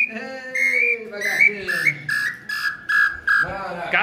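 Nambu (tinamou) hunting call whistle being blown: a run of short whistled notes stepping slightly down in pitch, about three a second, with a man's voice under the first part.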